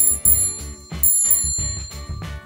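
Bicycle bell rung twice, each time a quick double ring, the second pair about a second after the first, the rings hanging on briefly. Background music with a steady beat runs underneath.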